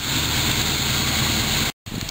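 1976 Corvette's 350 small-block V8 idling steadily, its exhaust running without a catalytic converter and leaking at a split rear Y-pipe. The sound cuts off abruptly shortly before the end.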